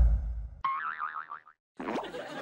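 Comic sound effects added in editing: the low boom of a heavy hit fades out, then a cartoon "boing" plays with a wobbling, warbling pitch for under a second.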